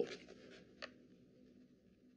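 Faint rustle of a sheet of paper held in the hands during a pause in speech, with one small tick a little under a second in.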